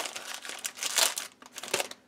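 A clear plastic bag crinkling as hands handle it and the papers packed inside it. The crinkling comes in uneven bursts, loudest about a second in, and dies away shortly before the end.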